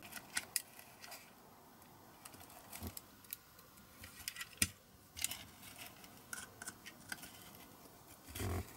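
A steel hook pick scraping and picking at a diecast metal toy-car part: short, irregular scratches and clicks of metal on metal, the sharpest just past halfway.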